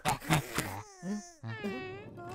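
Cartoon character vocalisations: a few short pulsing vocal sounds, then a drawn-out wailing cry in the second half.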